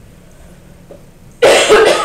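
A loud cough from a person, sudden and about half a second long, coming about one and a half seconds in.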